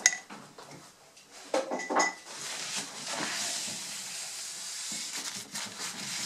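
Two light clinks of a brush against a glass jar of walnut water stain, one at the start and one about two seconds in, followed by a steady rubbing hiss of a paper towel wiping the freshly stained wood.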